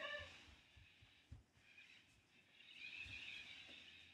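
Near silence: room tone, with a faint click a little over a second in and a faint soft hiss near the end.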